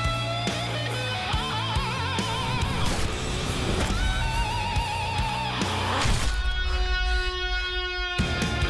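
Heavy rock music: distorted electric guitars and drums, with a lead guitar playing bent notes with a wide vibrato. About six seconds in the drums drop out, leaving held guitar notes over a low rumble.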